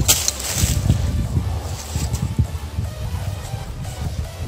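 Rustling and handling noise as gloved hands pick through dry leaf litter and broken porcelain shards, with a few sharp clicks right at the start and an uneven low rumble on the microphone.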